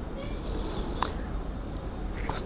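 Faint steady background noise with a single sharp click about a second in.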